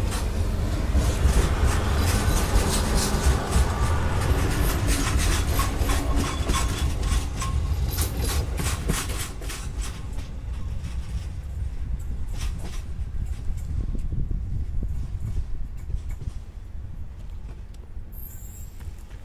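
Duewag VT628 diesel multiple unit passing close by and moving away, its diesel engine rumbling and its wheels clicking over the rail joints. The clicks come thick in the first half and thin out as the train fades into the distance.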